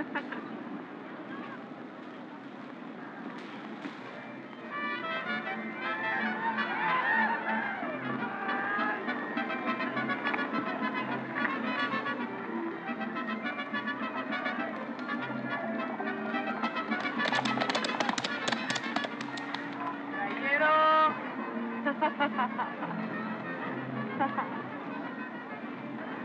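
Fairground din: brass band music with a pulsing bass line under crowd voices. A quick run of sharp cracks comes about two thirds of the way in.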